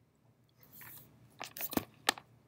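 A faint rustle, then a quick cluster of sharp, crackly clicks about one and a half seconds in.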